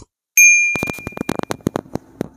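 Subscribe-button animation sound effect: a click, then a single bright notification-bell ding that rings out for over a second, overlapped by a quick rattling run of clicks.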